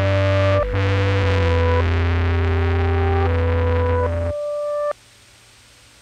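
Synthesizer music: sustained chords change every second or so over a steady low bass. The bass drops out about four seconds in, and the last chord cuts off suddenly about a second later, leaving only faint hiss.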